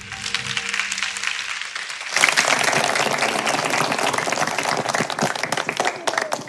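Background music with held tones, then applause from a crowd breaking out suddenly about two seconds in, dense and steady over the music.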